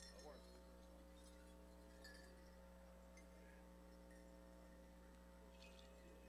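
Near silence: a faint steady electrical hum, with a few faint distant voices.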